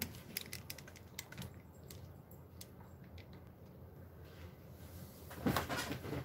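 Handling noise from a camera being tilted and adjusted: a quick run of small clicks and knocks in the first couple of seconds, then quieter, with a louder rustle near the end.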